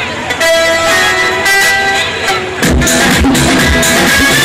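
Music with a melody of held notes, joined about two and a half seconds in by a steady beat of low drum strokes.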